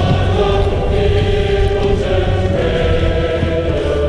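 Choral music: voices singing slow, long-held chords that change every second or two.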